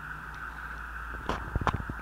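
Steady background hum and hiss, then a quick run of light clicks about a second and a half in.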